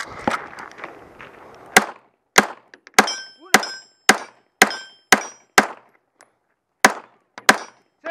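Semi-automatic pistol fired in a rapid string: ten shots about two a second, starting about two seconds in, with a short pause before the last two. A thin high ring trails several of the shots. Before the first shot there is rustling handling noise.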